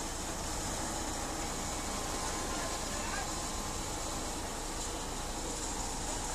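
Steady outdoor background noise with a constant low rumble of vehicles, with no distinct events.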